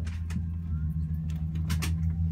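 Steady low drone of an Airbus A380's passenger cabin, with a couple of sharp clicks near the end.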